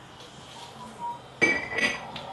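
Glass lid of a glass candy jar clinking against the jar twice in quick succession, each strike leaving a short ring.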